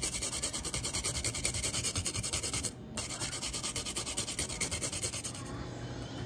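A fresh wasabi root grated on a stainless steel grater: quick, even rasping strokes, with a short break about three seconds in, stopping shortly before the end.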